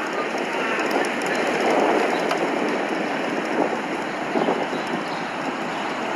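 Steady, even street noise heard on the move while riding along a city bike lane: rolling and traffic noise with no distinct events.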